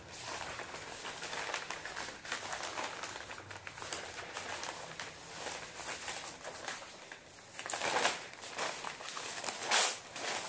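A sheet of newspaper rustling and crinkling as it is pressed onto wet spray paint and peeled off to texture the paint, with louder rustles near the end as it is lifted away.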